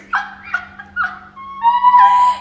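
Women laughing hard: three short high-pitched bursts of laughter, then a long high squeal of laughter held from about three quarters of the way in, the loudest part.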